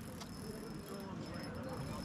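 Faint, distant voices over quiet outdoor background noise, with no nearby speech.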